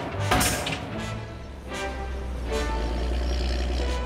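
Cartoon pile driver on a crane arm striking a post a few times, with a steady low machine hum setting in partway through, under background music.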